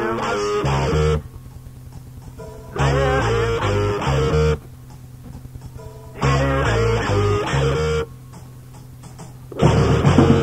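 Rock guitar playing a riff in repeated phrases about every three and a half seconds, with low bass notes under each phrase and quieter gaps between them.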